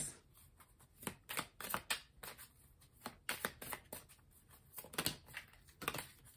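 A deck of tarot cards being shuffled by hand: quiet, irregular flicks and taps of card against card.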